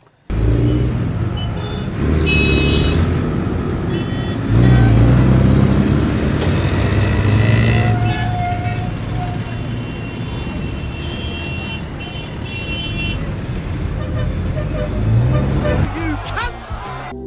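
Loud road and wind noise from a car driving fast on a highway, with several short high-pitched toots over it.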